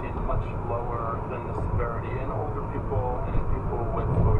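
Steady low road and engine rumble of a car driving at about 40 mph, heard from inside the cabin, with a voice from a news broadcast talking over it.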